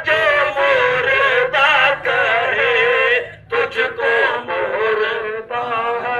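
A man singing a naat, an Urdu devotional song in praise of the Prophet, in long wavering held notes. There is a short break about three and a half seconds in.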